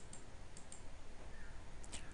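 A few faint, sharp clicks over a steady background hiss: a couple near the start and a pair near the end.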